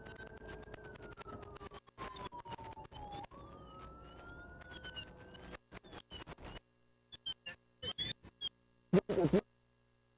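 Fire truck siren wailing, one slow fall in pitch and then a rise, heard fairly faintly from inside the cab. It cuts off about five and a half seconds in, followed by scattered short sounds and one louder burst near the end.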